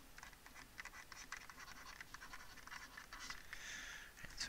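Faint scratching and tapping of a pen stylus writing numbers on a tablet surface, in many short, irregular strokes.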